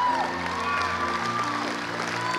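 Sustained instrumental chords held under the room, changing chord about a second in, with a congregation cheering and applauding, including a few rising and falling whoops.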